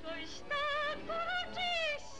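A woman's soprano voice singing a waltz song, holding high notes with wide vibrato in about three phrases, the last note bending downward near the end.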